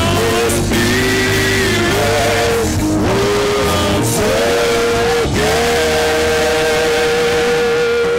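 Loud worship music: a choir singing over a full band, holding long notes that step from pitch to pitch, with one long note starting about five seconds in.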